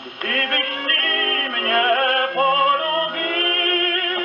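Portable wind-up gramophone playing a 1937 78 rpm shellac record of an operatic tenor air with orchestra. This passage holds no sung words, only the orchestral music, in the record's narrow, boxy sound. The music picks up again just after a brief lull at the opening.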